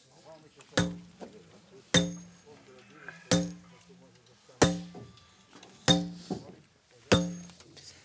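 A sledgehammer driving a steel earthing rod into the ground: six ringing metal-on-metal strikes, a little over a second apart.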